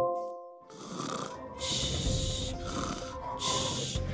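Cartoon dog sound effect from a lesson animation: a run of breathy huffs, about one a second, over soft background music, after a short chime fades out at the start.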